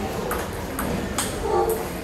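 Table tennis rally: a celluloid-type ball clicking off rubber paddles and the table, a few sharp clicks in quick succession, the loudest a little past halfway, with voices in the background.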